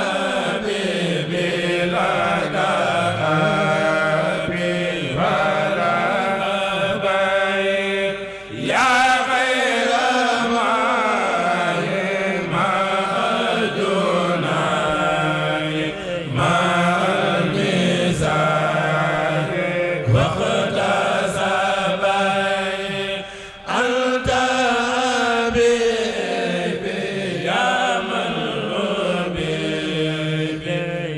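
A group of men chanting a Mouride khassida together, unaccompanied, into microphones, in long melodic phrases. The singing breaks briefly about a quarter of the way in and again around three quarters of the way through.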